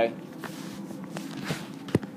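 Classroom room noise between remarks, with a few faint scattered knocks and a sharper click just before the end.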